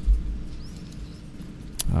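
A pause with a faint steady hum, a soft low thump at the start, and a single sharp computer mouse click near the end.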